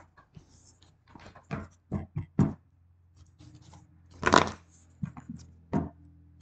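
A deck of tarot cards being handled and shuffled by hand: a run of short card taps and slaps, then one louder, longer rasp of cards sliding together about four seconds in.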